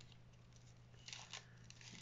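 Faint rustle of tissue paper being pulled apart by hand, with a short crinkling tear a little past a second in, over a low steady hum; one thin paper layer tears as it is separated.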